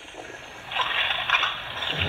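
Garbled, static-like sound from a phone's speaker on a call, lasting about a second midway and cut off at the phone's narrow range.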